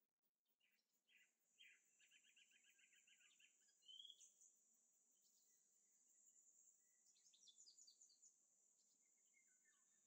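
Near silence: faint room tone with a few soft bird chirps and one quick trill of repeated notes, over a faint steady high-pitched hiss.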